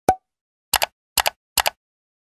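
Animated end-screen sound effects: a single pop with a short tone about a tenth of a second in, then three quick double clicks spaced about half a second apart as on-screen buttons and banners pop in.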